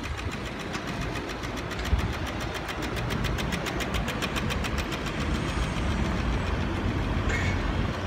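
Pedestrian-crossing signal for the blind ticking rapidly and evenly while the crossing is green, fading away after about six seconds, over steady road-traffic noise.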